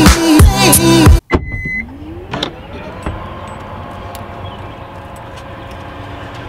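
Background music that cuts off about a second in, followed by a short beep and an electric motor whine that rises in pitch and settles into a steady hum: a car's powered rear hatch moving.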